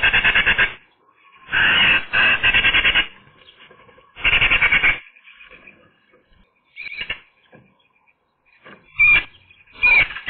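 Eurasian magpie chattering: three harsh, rapid rattling bursts in the first five seconds, the agitated chatter call. Then a few short sharp calls and clicks near the end.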